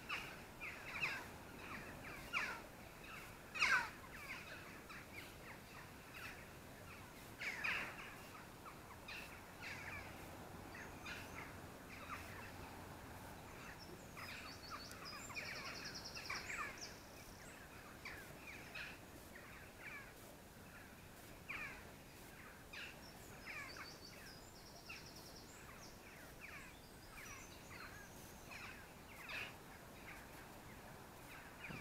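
Birds calling over and over: many short calls that slide downward in pitch, with a higher trill now and then.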